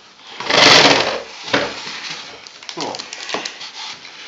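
Hands handling the plastic body of a Bosch Tassimo T55 capsule coffee machine, likely at its water tank: a loud burst of rushing noise about a second long, followed by several light plastic clicks and knocks.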